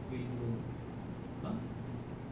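Steady low hum of a lecture room, with a couple of faint murmured words.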